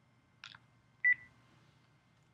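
A quick clicking about half a second in, then a short single high beep on the telephone conference line about a second in, the loudest sound, over a faint steady line hum.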